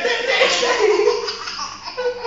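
A toddler laughing loudly in one long, high peal that falls in pitch and fades, with a man laughing along and a fresh burst of laughter near the end.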